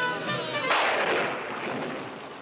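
Music fading out, then about two-thirds of a second in a sudden loud crash that dies away over about a second.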